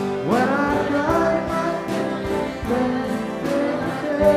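A gospel song performed live, a singing voice over instrumental accompaniment with a steady beat; the voice slides up into a held note just after the start.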